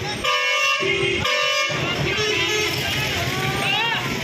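A vehicle horn honks twice, each blast about half a second long and a second apart, over the steady hubbub of a busy street market.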